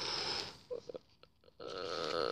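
A child's voice making wordless, breathy noises, broken by a short pause with a few faint clicks from plastic action figures being handled, before the voice starts again near the end.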